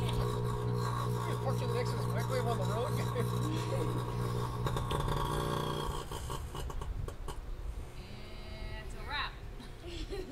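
Microwave oven running with something burning inside, giving a steady electrical hum from its transformer and magnetron, which cuts out about five or six seconds in as the oven fails and goes dead.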